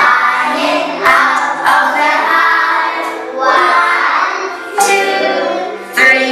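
A group of young children singing together in chorus, in sustained sung phrases that restart every second or two.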